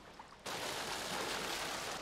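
Thick sewage sludge pouring from a pipe and splashing onto a heap, a steady rushing splash that cuts in suddenly about half a second in.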